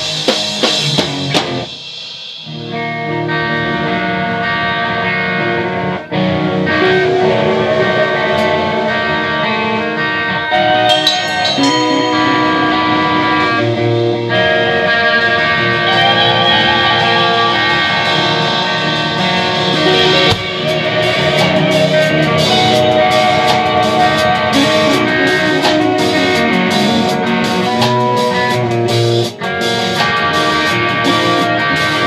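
Instrumental post-hardcore rock band playing live in a rehearsal room: electric guitars holding long ringing chords over a drum kit. Drum hits lead in, the sound drops briefly about two seconds in, and the drums come back harder and busier for the last third.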